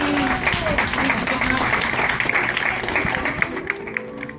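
Applause: hands clapping quickly and densely, with voices mixed in. It thins out near the end.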